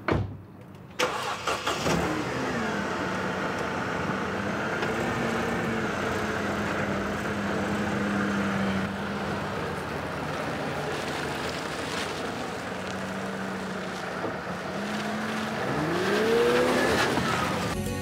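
Car engine starting about a second in, flaring briefly and settling to a steady running note, then rising in pitch and getting louder near the end as the car accelerates away.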